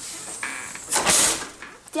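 A door being opened and shut, with a short, loud rushing hiss about a second in.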